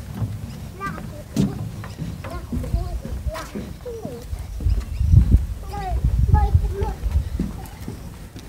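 Small wheels and footsteps knocking and rumbling over the boards of a wooden footbridge deck, a rough clip-clop rhythm, with a small child's high voice breaking in now and then.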